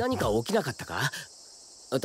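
A character's voice speaks briefly in Japanese, then a steady, high chorus of insects chirping carries on alone for the second half.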